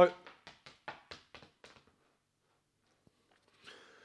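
A man's voice breaks off mid-word, followed by a run of short breathy bursts, about five a second, that fade out over two seconds. A faint soft rustle comes near the end.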